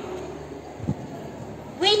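Faint steady background noise in a pause between spoken lines, with one brief low sound a little before the middle; a child's voice starts right at the end.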